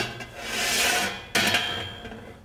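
A small object rolling along a model roller-coaster track, a rolling, rubbing rumble that swells and fades, then starts again about a second and a half in.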